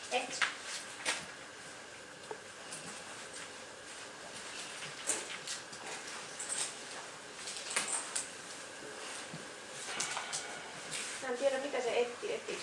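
A leashed dog searching a room by scent: scattered short, soft clicks and rustles over a faint steady hum.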